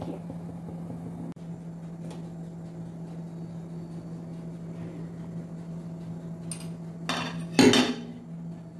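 Stainless steel cookware clattering briefly and loudly near the end, after a lighter clink just before it, over a steady low hum.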